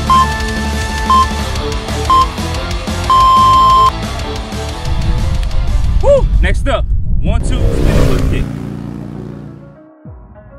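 Workout interval-timer countdown over background rock music: three short high beeps about a second apart, then one longer, loud beep that marks the start of the next exercise round. A voice clip follows over the music about halfway through, and the music fades out near the end.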